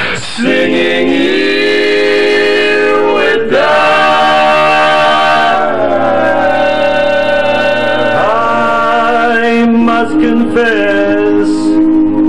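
Male voices singing in close barbershop harmony, holding long sustained chords that change every few seconds.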